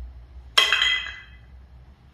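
A single sharp clink of glass, ringing out and dying away within about a second.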